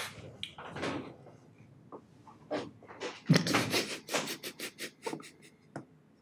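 A man laughing in a quick run of about ten short bursts, starting about three seconds in, after a few softer scattered sounds.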